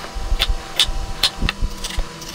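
Chef's knife slicing vegetables on a wooden cutting board, about two to three sharp strokes a second, over a steady low hum.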